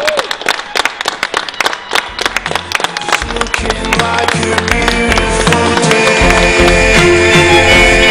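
Guests clapping and cheering, with a short whoop at the start. About three seconds in, music with a steady bass line and sustained melody comes in under the clapping and grows louder.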